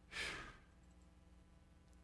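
A man's short sigh: one quick breath out close to the microphone, shortly after the start, over a faint steady low hum.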